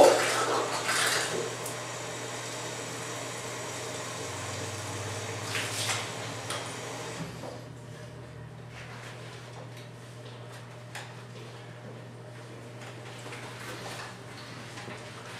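Cold water running from a sink hose into the plastic bag of a flat-mop floor-finish applicator, filling it. The flow stops about halfway through, leaving a few light clicks and knocks of handling.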